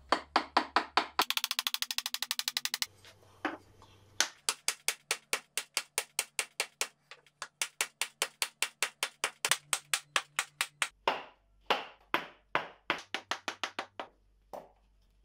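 Hammer blows on the end grain of a wooden key, driving it along a groove across a pine tabletop: sharp wooden knocks in quick, even runs of about four or five a second. About a second in comes a burst of much faster tapping, and the last three seconds hold heavier, more spaced blows.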